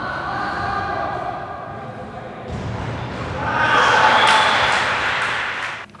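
Sound of an indoor school handball game: players' voices calling out and echoing around the sports hall, with thuds of the ball and players' feet on the floor. It grows louder a little past halfway, where several sharp thuds stand out.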